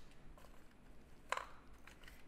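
A single short snip of scissors cutting through a drinking straw, a little past halfway, against quiet room tone.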